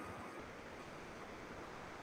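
Faint steady hiss of microphone and room background noise, with no distinct sound events.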